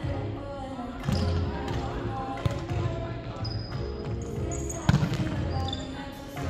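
Indoor volleyball rally on a hardwood gym floor: the ball is struck with a few sharp smacks, the loudest about five seconds in, and sneakers squeak briefly on the court. Players' voices and music with a low beat carry on underneath.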